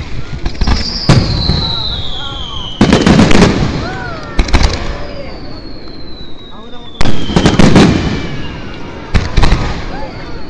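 Aerial firework shells bursting overhead: a bang about a second in, clusters of bangs around three seconds and again around seven to eight seconds, and more near the end. Between the bursts a high whistle slides slowly down in pitch, over crowd voices.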